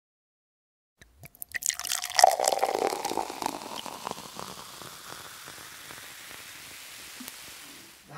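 Beer poured into a glass, starting with a few sharp clicks about a second in and settling into a steady, fading fizz of carbonation.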